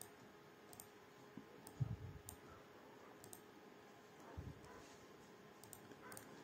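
Faint, scattered computer mouse clicks over near-silent room tone, with a couple of faint low bumps.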